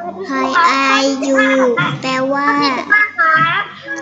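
Only speech: a child's voice in a sing-song chant, spelling out an English word letter by letter ("h, o, u") and then saying "แปลว่า" ("means"), heard through a video call.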